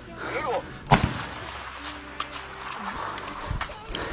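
Gunshots in a firefight: one sharp, loud shot about a second in, followed by a few fainter, more distant shots.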